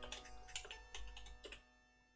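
Typing on a computer keyboard: a quick run of keystrokes that stops about a second and a half in, over faint music.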